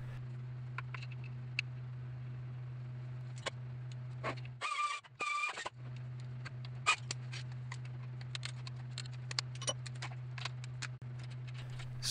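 Scattered light metallic clicks and clinks of hand tools (pliers and a wrench) working at a clutch slave cylinder on a transmission bell housing, over a steady low hum. About five seconds in, two short, louder grating sounds.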